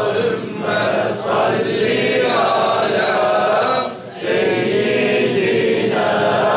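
A group of men chanting a devotional Islamic recitation together in unison, in drawn-out melodic phrases with short breaks for breath about half a second and about four seconds in.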